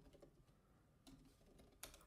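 Faint computer keyboard keystrokes: a few quiet key taps, the clearest near the end.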